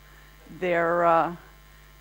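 Steady low electrical mains hum in the sound system, with a woman's voice giving one short held vowel sound, like a hesitation, near the middle.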